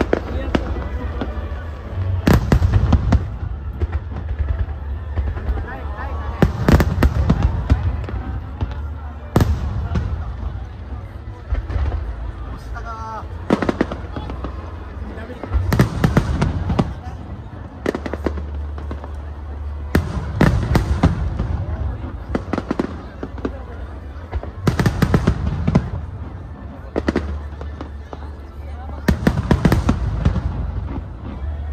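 Aerial firework shells bursting in quick succession, sharp booms every one to three seconds, often in close pairs, over a steady low rumble.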